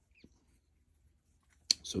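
Near silence with one faint tick about a quarter of a second in, from small parts being handled; a man's voice starts near the end.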